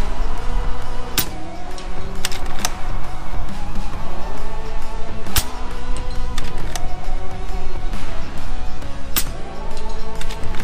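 Background music, with the sharp cracks of a .22 PCP air rifle (FX Impact M3) firing over it. There are several cracks, the loudest about four seconds apart, as it knocks down steel targets.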